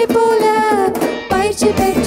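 Female voices singing a Tamil Christian action song into microphones over music with a steady drum beat.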